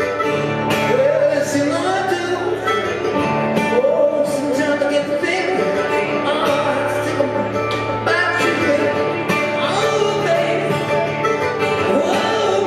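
Live acoustic folk music: mandolin and guitar playing, with a man singing long, wordless phrases over them.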